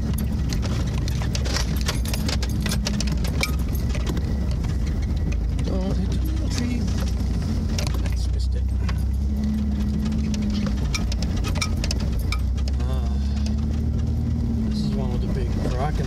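4x4 SUV's engine running steadily at low speed, heard from inside the cab, with many small rattles and clicks from the body and loose items as it crawls over a rough dirt trail.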